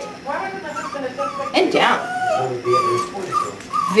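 Eight-week-old puppy whimpering: a string of short, high whines, with quick rising yips at the start and about a second and a half in.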